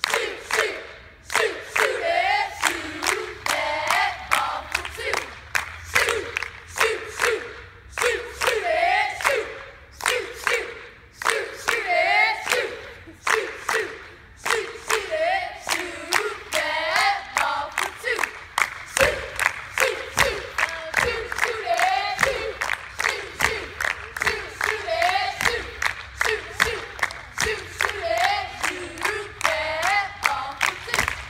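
A group of girls chanting a basketball cheer in unison, keeping time with a steady beat of sharp hand claps.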